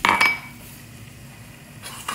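Stainless-steel kitchenware clinking: a sharp metallic clink with a brief ring right at the start, and a softer clink near the end, over a faint steady hum.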